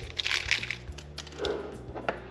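Handling noise at a workbench: a small plastic parts bag crinkling, with light clicks of small metal parts and tools.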